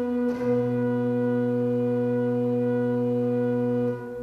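Organ music closing on a chord that changes at the start and is held steadily, with a low bass note coming in about half a second in. The chord breaks off about four seconds in.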